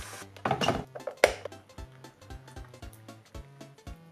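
Background music with a steady beat. Over it, tap water runs briefly into a plastic electric kettle at the start, then come a few knocks and one sharp clink about a second in.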